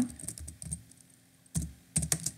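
Computer keyboard being typed on: a quick run of keystrokes, a short pause, then a louder keystroke about one and a half seconds in and another near the end.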